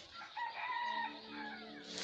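A faint, drawn-out animal call in the background, pitched, with several tones held together and lasting about a second and a half.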